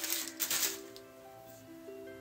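Paper packaging crinkling and rustling as a small parcel is unwrapped, dying away after about a second, over soft background music with long held notes.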